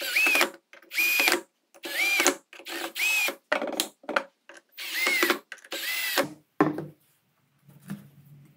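Red cordless drill/driver driving screws into the side of a wooden jig box: about seven short runs roughly a second apart, the motor winding up and back down in pitch each time, with a couple of sharp clicks near the end.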